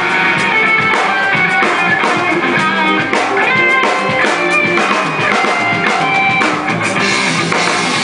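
Live rock band playing an instrumental passage: drum kit, electric guitars and bass guitar, with a guitar melody of held notes stepping up and down over the drums.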